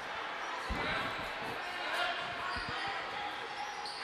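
A basketball dribbled on a hardwood gym floor, a few dull bounces at an uneven pace, over the steady chatter of a gym crowd.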